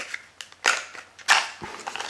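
Small cardboard box being handled and opened: a few short, sharp cardboard snaps and scrapes, the loudest two about halfway through and a little later.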